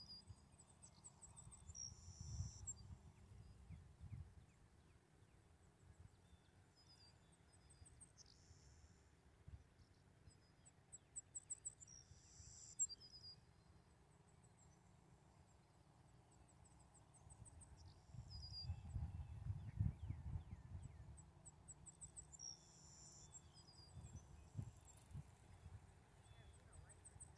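Quiet open-field ambience: small songbirds chirping in short high-pitched series and trills every few seconds, with low rumbles on the microphone a couple of seconds in and again around the twenty-second mark.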